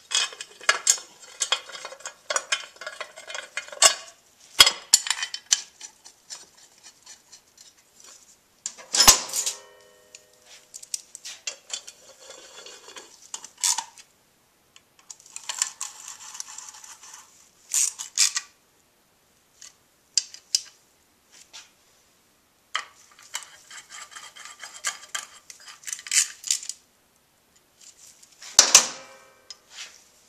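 Metal hand tools clinking and clicking in bursts as bolts are fastened on a small motorcycle engine's side cover. There is a loud ringing metal clank about nine seconds in.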